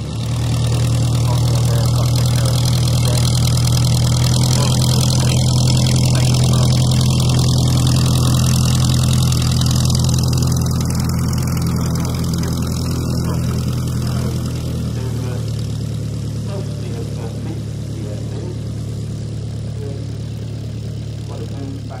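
Desoutter I monoplane's 115 hp engine, a Cirrus Hermes four-cylinder inline, running steadily as the aircraft taxis on grass. The note picks up just after the start and eases slightly about fifteen seconds in.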